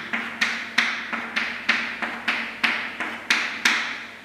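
Chalk striking and stroking a chalkboard as short lines and letters are written: a steady run of about a dozen sharp taps, roughly three a second.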